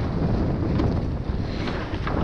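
Wind buffeting the microphone over the steady rush of water along a rowed surf boat's hull as it picks up a run on a wave.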